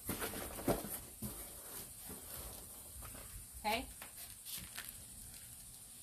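Hands working loose potting soil into a plant pot and pressing it down: soft crackling rustles, busiest in the first second or so.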